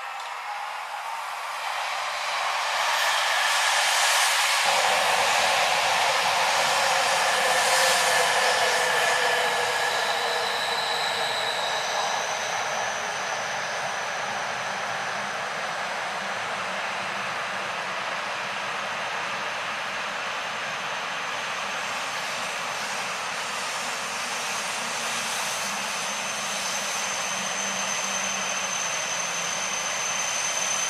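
A train running: a steady rushing noise that swells over the first few seconds, eases back to an even level, and gains a thin high whine after about twelve seconds.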